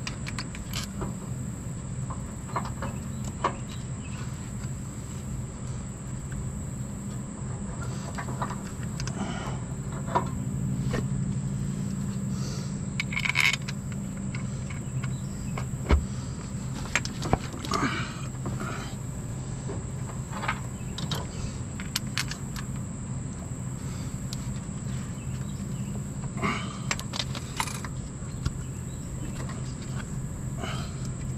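Scattered light metallic clicks and taps as an A650E automatic-transmission front pump is worked onto its guide bolt and seated against the AW4 transmission case, with a few sharper knocks around the middle. A steady low hum and a steady high whine run underneath.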